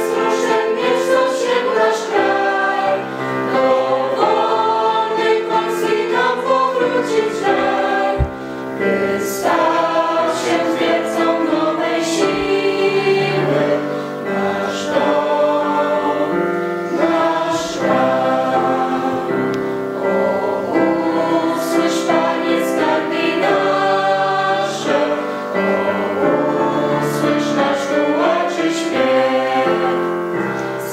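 Mixed choir of young voices singing a hymn in parts, in sustained phrases with brief breaks between them.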